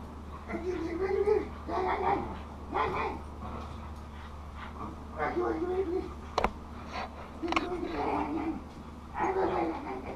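Young giant schnoodle puppy whining and yelping in a series of wavering, drawn-out cries, with one sharp click a little past the middle, over a low steady hum.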